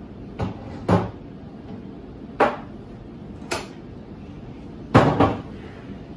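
A plastic blender pitcher and small drinking glasses being set down and shifted on a wooden countertop: a string of about six sharp knocks a second or so apart, the loudest pair close together near the end.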